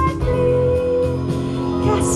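Live symphony orchestra playing an instrumental passage of long held notes and chords, with no voice over it.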